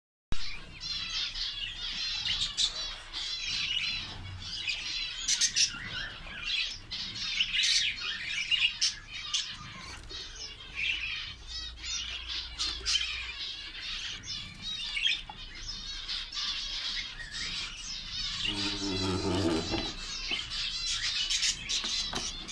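Budgerigar chicks and an adult budgie in a nest box chirping without pause, a dense stream of high, quickly repeated chirps. A brief low, voice-like sound comes in near the end.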